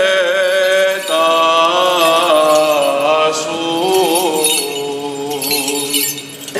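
Greek Orthodox priest chanting in Byzantine style: one man's voice holding long notes that bend and waver, with a short break about a second in and trailing off near the end.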